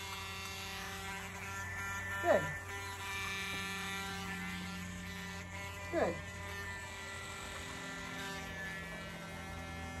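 Dremel pet nail grinder running at a steady whine while a puppy's nails are ground.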